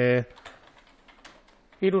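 Computer keyboard being typed on: faint, scattered key clicks in a quiet stretch between spoken words.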